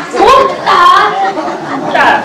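Speech only: stage actors speaking Tamil dialogue.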